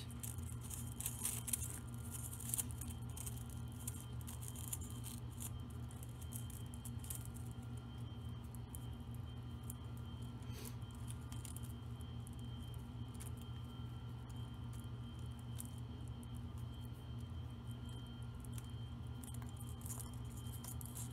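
Faint clicks and rustling of thin wire and small glittered ornament balls being handled as a wire is wrapped around the bundled stems, mostly in the first few seconds, over a steady low hum.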